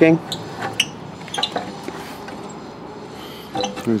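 A few light clinks and taps in the first two seconds, over a steady background hiss.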